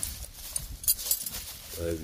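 Gloved hand handling peppers among cut lemongrass stalks in a basket: a low rustle with a sharp crackle of leaves about a second in. A man's brief 'uh' comes at the very end.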